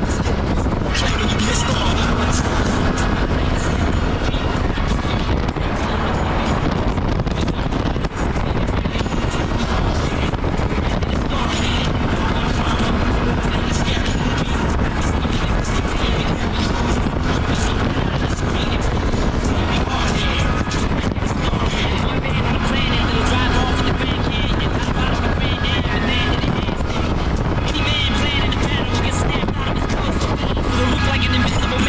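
ATV engine running as the quad rides along a dirt trail, with steady wind rumble on the microphone. Music with vocals plays over it from a handlebar-mounted Bluetooth speaker.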